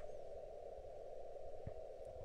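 Quiet room tone: a faint, steady background hiss with a single soft tap near the end.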